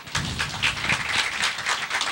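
Audience applauding: a dense, steady patter of many people's hand claps that starts right at the beginning.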